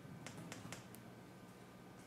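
About five faint keystrokes on a laptop keyboard in quick succession within the first second, typing a short word.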